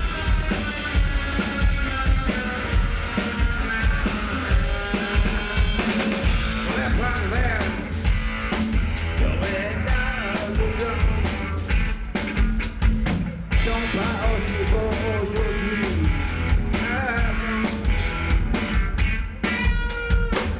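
Live post-punk band playing: a drum kit drives a steady beat of kick and snare hits, with saxophone lines that waver and bend in pitch over it.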